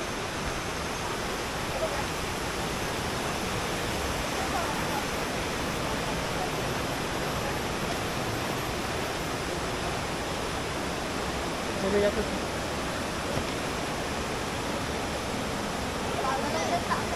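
Shallow rocky river rushing steadily over boulders and small rapids, a constant rush of water, with voices in the background and a brief louder sound about twelve seconds in.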